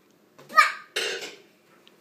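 A young child's two short vocal sounds: a brief pitched cry, then a sharp, breathy burst.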